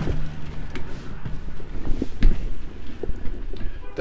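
Low rumbling handling and footstep noise with a few sharp clicks about two seconds in, as someone opens a travel trailer's entry door and steps up inside.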